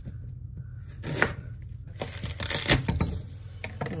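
A garlic bulb being broken into cloves and peeled on a plastic cutting board: papery skins crackling and tearing, with a few sharp knocks on the board.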